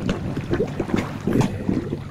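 Koi splashing and slurping at the water surface as they snatch food from a hand, in quick, irregular bursts, with water pouring into the pond from an inlet pipe.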